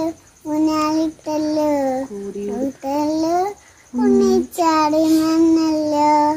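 A young girl singing unaccompanied, in short phrases of long held notes with brief pauses between them.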